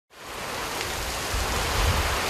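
Hurricane Harvey's wind and heavy rain: a steady, loud rush of driving rain, with low rumbling wind gusts on the microphone that grow stronger about a second and a half in.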